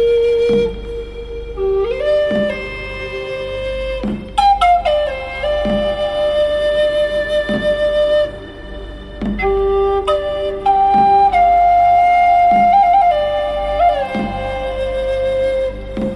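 Native American style flute in the key of G playing a slow melody of long held notes, stepping between pitches with quick ornamental flutters. Underneath are a low steady drone and a soft low beat roughly every second and a half.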